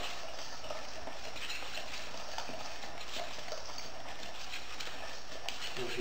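Wire whisk stirring dry ingredients (flour, sweetener, baking powder and salt) in a stainless steel mixing bowl: a steady run of light ticks and scraping as the whisk strikes the metal.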